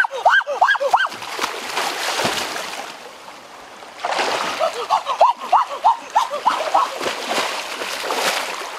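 River water splashing and sloshing as a person wades and thrashes his arms through it, with quick runs of watery plops in the first second and again from about four seconds on, and a quieter lull between.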